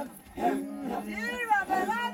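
Maasai men chanting as a group: a steady low drone from the line of singers under a high, wavering lead voice that rises and falls in long arcs.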